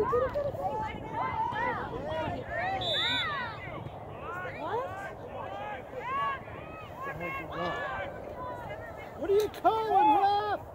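Overlapping shouts and calls of girls' voices across a soccer field, mostly distant and unintelligible, with louder shouts near the end.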